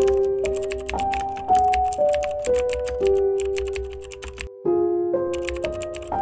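Rapid keyboard typing clicks over music of held notes that step to a new pitch about every half second. Both cut out briefly a little past four seconds in, then resume.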